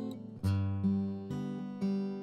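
Background music on acoustic guitar, a new note or chord plucked about every half second and left to ring.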